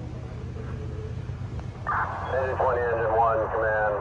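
A low, steady drone of idling fire apparatus engines. About two seconds in, a fireground radio voice cuts in abruptly, thin and tinny through a handheld radio speaker.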